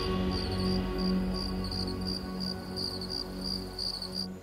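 Crickets chirping in an even, repeating rhythm of a few chirps a second, over soft held soundtrack music that slowly fades.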